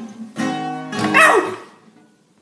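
A chord strummed on an acoustic guitar about half a second in and left ringing, then a loud vocal cry that slides steeply down in pitch, the loudest thing here, as the song closes.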